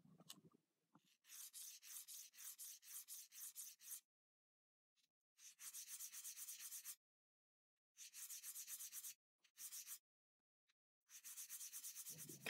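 Glass magnifier lens edge being ground on a wet diamond hone, beveling the edge: a faint, rhythmic scraping of quick back-and-forth strokes, about three a second, sped up to double speed. The strokes come in several short runs separated by dead silent gaps.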